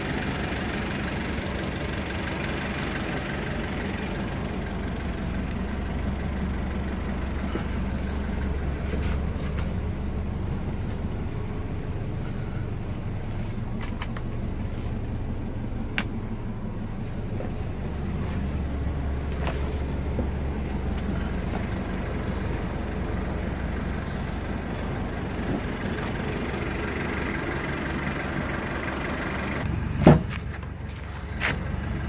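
Hyundai Grace van's engine idling steadily, with a few faint knocks about halfway through.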